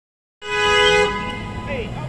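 A vehicle horn gives one short toot of about half a second, two notes together, over low street-traffic rumble.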